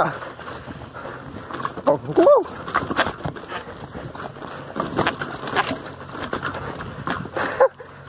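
Lowered bicycle rattling and knocking as it is ridden fast over a rough, rooty dirt trail, its underside repeatedly striking the ground, with tyre noise throughout. A short vocal exclamation about two seconds in.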